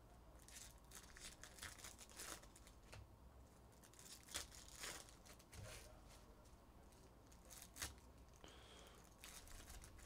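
Faint crinkling and tearing of foil Topps Chrome card-pack wrappers, with the rustle of cards being handled, in scattered short strokes.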